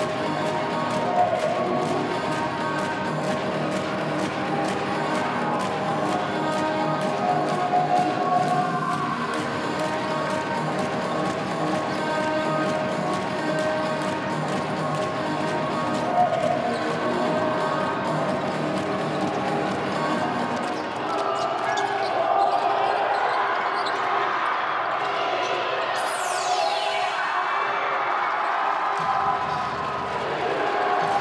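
Music over a basketball arena's loudspeakers with basketballs bouncing on the court in an even rhythm and voices in the hall; from about two-thirds in the music changes, and a falling swoosh cuts through it a few seconds before the end.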